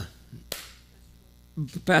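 A pause in a man's speech, filled by a steady low electrical hum, with one short sharp noise about a quarter of the way in. The man starts speaking again near the end.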